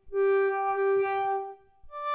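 Wavetable synthesizer (an Axoloti board played from a ROLI Seaboard Block) sounding one held note for about a second and a half, its tone shifting as the wavetable knob is turned. The note fades, and a higher note begins near the end.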